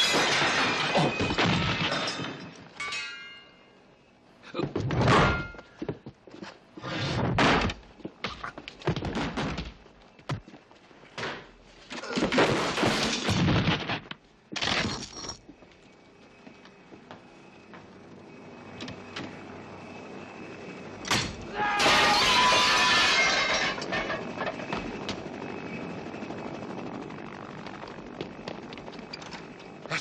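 Film fight sound effects: a run of heavy thuds and crashes as bodies are thrown into furniture and tableware, with breaking and shattering sounds and grunts. The crashes come in separate bursts through the first half, and a longer crash of breakage comes about two-thirds of the way in.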